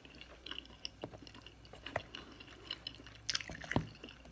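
Close-up chewing of soft food, with small wet mouth clicks. Near the end a metal fork clicks against the plastic food container.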